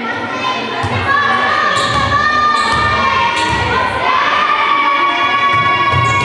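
Young spectators in a sports hall cheering and shouting, with long, drawn-out high-pitched shouts held over the crowd noise during a free throw. A few low thuds sound beneath the cheering.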